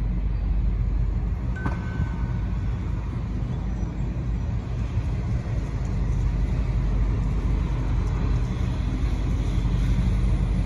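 Steady low rumble of a car heard from inside the cabin while it drives slowly, engine and tyre noise. There is a single click with a brief high chirp a little under two seconds in.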